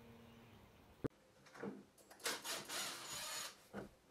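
Cordless drill-driver running in a few short bursts, backing screws out of a fibreglass camper pop top to free the tent, starting about halfway in.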